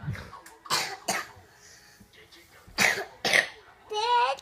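A person coughing: four short coughs in two pairs, about two seconds apart.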